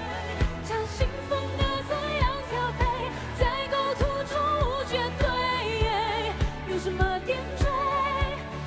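A woman singing a Mandarin pop ballad live into a microphone, with vibrato on held notes, over a band with sustained bass and a steady kick drum beat.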